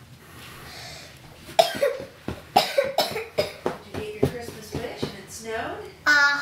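A person coughing in a long run of short, sharp coughs, about three a second, starting about a second and a half in and tailing off near the end.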